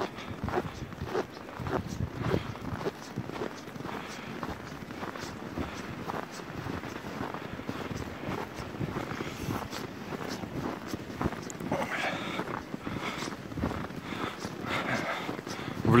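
Footsteps crunching and creaking in dry snow at a steady walking pace, about two steps a second.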